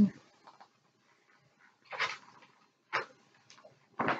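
Magazine pages being handled: two short paper rustles about a second apart, with a few fainter paper touches around them.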